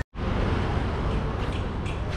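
Steady street traffic noise, a continuous wash of engine and road sound, cutting in abruptly after a split-second gap.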